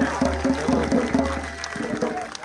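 Indistinct voices with a steady low hum underneath.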